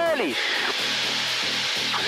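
Steady rushing hiss of an Extra aerobatic plane's engine and slipstream, heard through the cockpit intercom during a loop.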